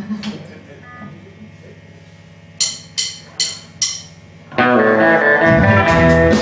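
A low steady hum, then four sharp clicks about 0.4 s apart: a drummer's count-in. About four and a half seconds in, the band comes in loudly with electric guitars, bass guitar and drums.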